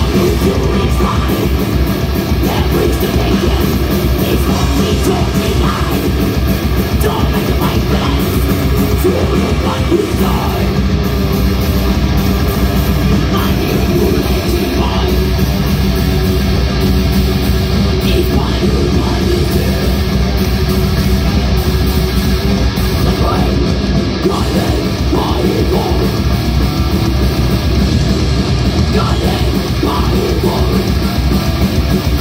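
A thrash metal band playing live, loud and unbroken: distorted electric guitars, bass guitar and a drum kit.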